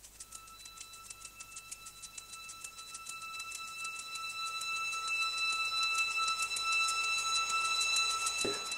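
A title-sequence sound effect of rapid, even clock-like ticking under a steady high ringing tone, growing louder throughout.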